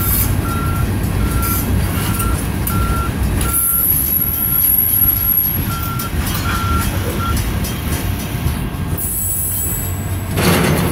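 Freight cars rolling slowly past on jointed track: a steady rumble of steel wheels on rail, with a thin high squeal in the middle. A high electronic beep repeats about twice a second over it and stops about seven seconds in.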